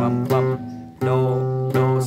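Nylon-string classical guitar played fingerstyle in a Central Highlands (Tây Nguyên) style: a few plucked notes over a repeated low bass note. The sound dies away briefly just before one second in, and the next note comes in at one second.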